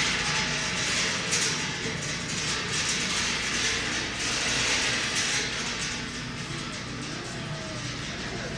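Shopping cart rolling over a hard store floor, a steady rattling rumble as it is pushed along the aisle.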